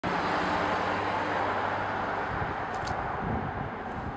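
Steady outdoor hiss and rumble with a low vehicle-engine hum that stops a little over two seconds in, followed by a few low thuds.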